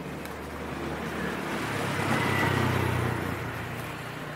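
A road vehicle passing by: a broad rush with a low engine hum that swells to its loudest about two and a half seconds in, then fades.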